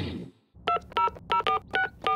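Five short two-tone telephone keypad beeps as a number is dialed on a smartphone, at an uneven tapping pace; the tail of the theme music dies away just before them.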